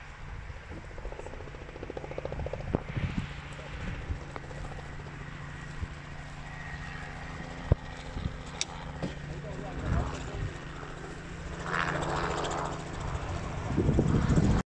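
Helicopter rotor blades and engine heard from a distance as a steady low drone, with a few sharp clicks and a louder rush near the end.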